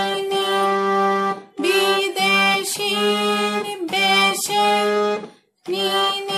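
Harmonium played slowly, sounding sustained melody notes one after another over a steady low held note. It breaks off briefly twice, about a second and a half in and near the end.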